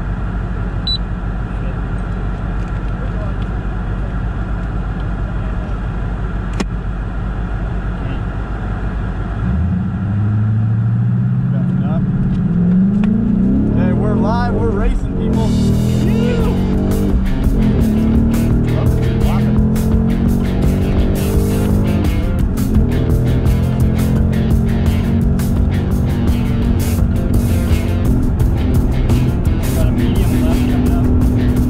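A 2017 Ford Mustang GT's 5.0 V8, heard from inside the cabin, idling steadily, then accelerating hard from about ten seconds in. Its pitch climbs and drops back at the upshifts, and it then runs at speed under a steady rush of wind and road noise.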